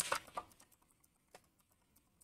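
Faint computer keyboard typing: a few quiet keystroke clicks, most of them in the first half second and one more a little past the middle.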